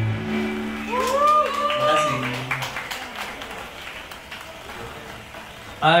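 The last chord of a live band's song rings out and fades over the first couple of seconds, as the small crowd cheers with a few high calls and claps. The applause thins out and dies down toward the end.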